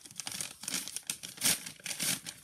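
Postal packaging being torn open and crinkled by hand: a quick run of irregular rips and crackles, loudest about a second and a half in.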